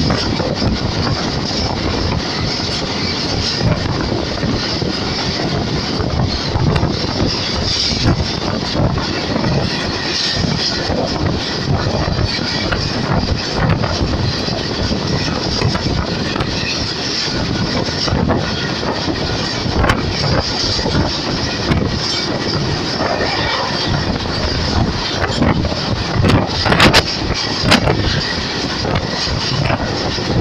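Passenger train running at speed, heard from an open coach doorway: a steady rumble of wheels on the rails with wind rushing past, and a few sharp clicks about three-quarters of the way through.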